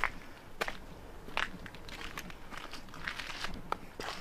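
Footsteps on a stone-paved path, about one step every three-quarters of a second.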